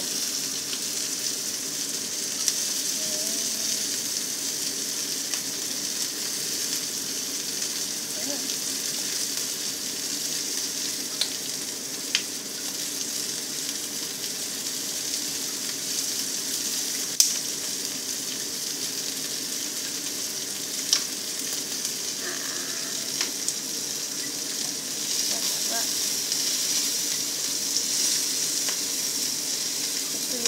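Whole capelin frying in hot oil in a cast-iron skillet: a steady sizzle with a few sharp clicks here and there, growing a little louder near the end.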